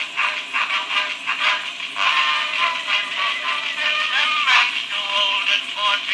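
Excelsior cylinder phonograph playing a cylinder record through its horn: rhythmic instrumental music with a thin, narrow-range tone, no bass and a faint hiss.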